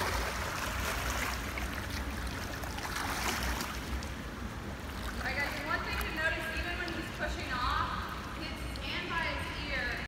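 Water splashing from a swimmer's breaststroke into the pool wall and the turn, in two surges over the first few seconds. From about halfway, children's voices chatter over it.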